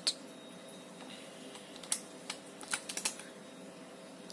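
Computer keyboard keys pressed one at a time, about eight separate clicks with most of them in the second half. A faint steady hum runs underneath.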